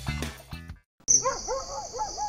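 Background music ending under a second in. After a brief silence, a night-time ambience sound effect starts: a steady, high insect chirring, like crickets, with a quick run of about five short, rising-and-falling animal calls.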